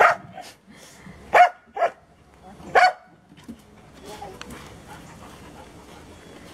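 A dog barking four times in short, sharp barks within the first three seconds, with two of the barks close together in the middle.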